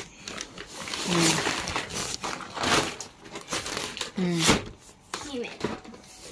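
Shiny synthetic fabric of a pop-up play tunnel rustling and crinkling as it is gripped and pulled, with a few short vocal sounds in between.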